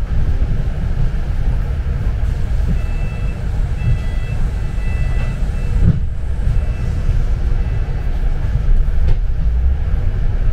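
Steady low rumble of a London double-decker bus's engine and road noise heard from the upper deck, with a short run of high electronic beeps in the middle.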